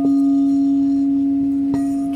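Crystal singing bowl played with a suede-covered wand, ringing one steady, sustained tone. A light tap of the wand sounds at the start and again near the end.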